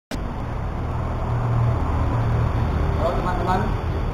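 Steady low rumble of vehicle noise, with a man's voice starting briefly near the end.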